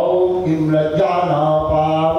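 A man chanting Hindu wedding mantras into a microphone, a continuous sung recitation on held notes.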